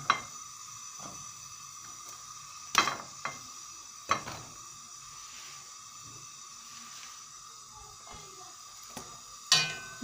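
Yeast-dough bishi frying in hot oil in a pan: a steady sizzle, broken by about four sharp clicks, the last near the end as a spatula goes into the pan.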